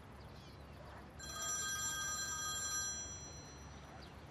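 Mobile phone ringtone: a steady electronic ring of several held tones, starting about a second in and lasting about two seconds before fading.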